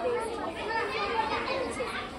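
Children's voices chattering, several at once, with no single voice standing out.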